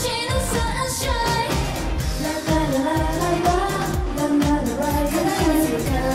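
Upbeat J-pop song sung by a girl group, female voices over a steady dance beat.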